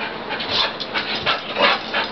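Dog panting in quick, uneven breaths, about three or four a second.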